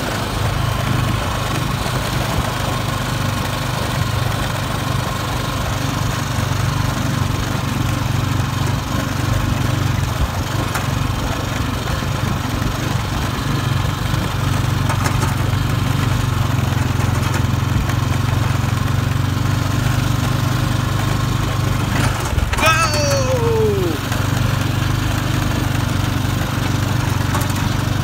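Honda ATV engine running steadily while riding, with wind buffeting the phone's microphone.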